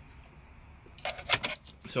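A faint low hum, then about a second in a quick run of sharp clicks and knocks as the handheld camera is moved and handled.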